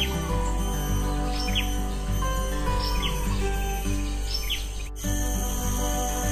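Background music over wild birds chirping, short calls about every second and a half. The bird calls stop abruptly about five seconds in, and the music carries on alone.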